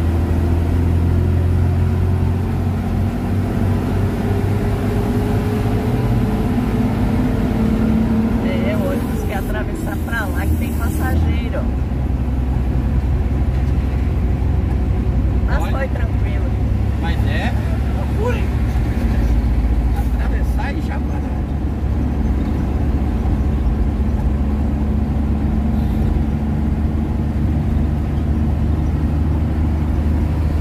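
Steady low engine drone and road noise inside a truck cab on the move. A whining tone climbs slowly over the first eight seconds or so, then drops away, as the vehicle gathers speed.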